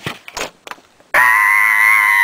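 A few short knocks as the camera is handled, then about a second in a child's voice starts a loud, high-pitched held note that stays steady.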